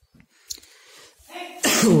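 Near silence with a faint click, then about one and a half seconds in a sudden, loud, breathy burst from a man's voice that runs straight into the spoken word 'y'.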